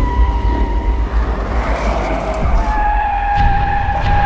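Car tyres squealing as a minivan brakes and turns in: a high steady squeal that drops a little in pitch about halfway through and holds, over a deep low rumble.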